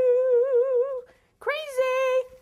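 A woman humming long held notes to herself: one sustained note that wobbles in pitch toward its end, a short pause, then a second held note starting about a second and a half in.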